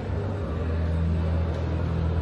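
A steady low hum that grows a little louder about half a second in.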